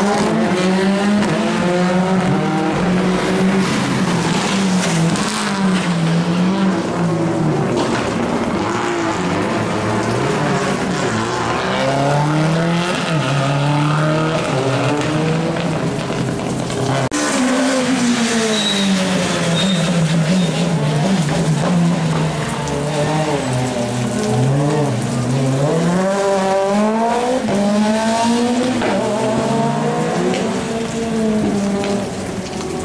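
Rally car engines revving hard, the pitch climbing and dropping again and again as the cars accelerate, shift gear and brake for the corners.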